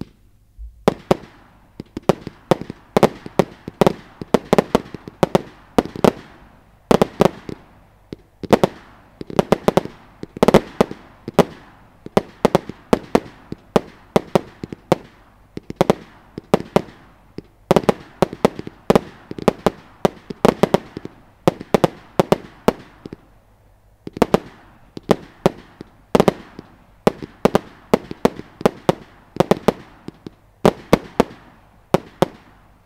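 Wolff Extrema multi-shot consumer firework firing. From about a second in it gives a rapid, unbroken string of launch thumps and aerial bangs, several a second, with louder clusters now and then.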